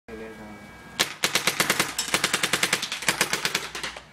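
Etek 3 electronic paintball marker firing in rapid fire, about a dozen shots a second, starting about a second in and running almost to the end.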